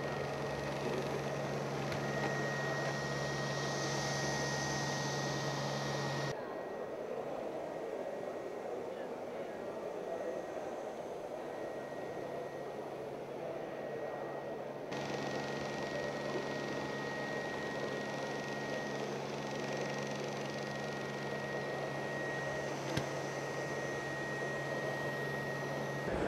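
Neato Botvac D7 Connected robot vacuum running, a steady low motor hum with a thin high whine, over the murmur of background voices. The hum drops out for several seconds in the middle and then returns.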